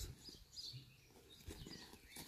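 Near silence with faint bird chirps in the background.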